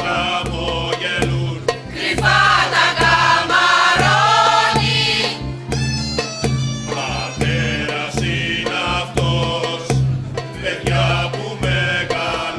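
A mixed choir singing a folk song in parts over a steady percussion beat. The voices swell loudest a couple of seconds in and drop out briefly after about five seconds, leaving the beat alone.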